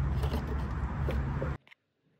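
A steady low outdoor rumble with a faint click or two, cutting off abruptly to dead silence about one and a half seconds in.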